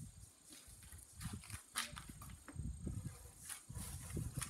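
Footsteps scuffing on stone and gravel, a few sharp clicks among irregular low rumbles, over a steady high chirring of crickets.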